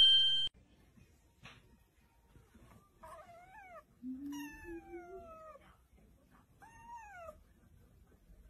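A kitten meowing three times, high and falling in pitch, the second meow the longest.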